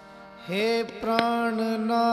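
Sikh kirtan music: after a quiet opening, a singer's voice and harmonium come in about half a second in. The voice slides up onto a long held note, and a couple of tabla strokes sound about a second in.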